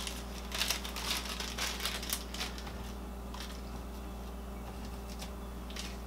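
Small plastic zip-top bag crinkling as it is handled, busily for the first couple of seconds, then only a few light rustles, over a steady low hum.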